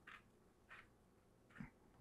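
Near silence, with three faint, brief rustles of fingers stirring freeze-dried rice and quinoa grains on a metal tray.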